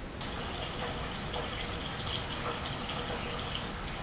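Gasoline being poured from a plastic gas can into a fuel tank: a steady trickling, splashing hiss.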